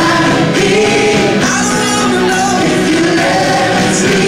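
Live gospel music played loud in a hall: several voices singing together over a full band backing.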